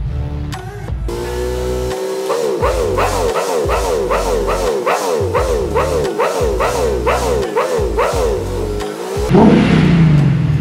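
Nissan VK56VD V8 in an Infiniti M56, smoking heavily as it burns off Seafoam, heard sped up threefold so its running becomes a high, buzzy note that sounds like a two-stroke, its pitch wavering up and down about twice a second. Near the end it switches to the engine revving at normal speed.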